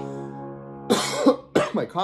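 A sustained piano chord dying away, then a man's short, sharp cough about a second in. It is a lingering cough that he says is almost gone.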